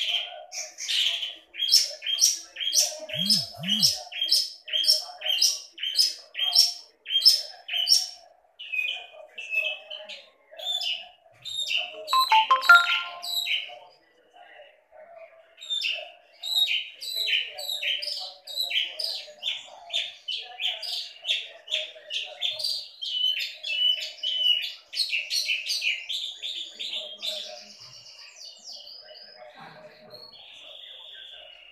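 Long-tailed shrike (cendet) singing vigorously, running through a string of imitated calls of other birds. It opens with an even series of sharp chirps about two a second, gives a louder, harsher burst about twelve seconds in, then goes on in dense, varied chatter that thins out near the end.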